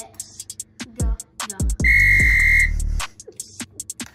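Background hip-hop beat with deep sliding bass notes and quick ticking hi-hats. A loud, steady electronic beep comes in about two seconds in and holds for most of a second.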